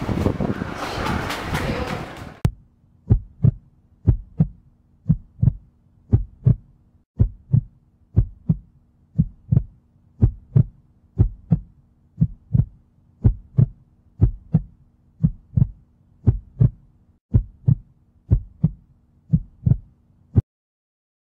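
A heartbeat sound effect: paired lub-dub thumps about once a second over a faint steady low hum. It comes in after about two seconds of dense, noisy location sound that cuts off abruptly.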